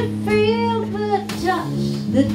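A female singer performing live with a small jazz band, keyboard, drums and double bass accompanying. She holds one wavering note, then sings a shorter one over steady low band notes.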